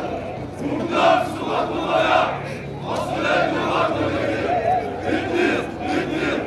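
A group of voices shouting together in loud surges, rising and falling about once a second.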